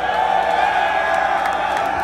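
Club crowd cheering between songs at a death-metal show, over a steady held note ringing from the stage amplification.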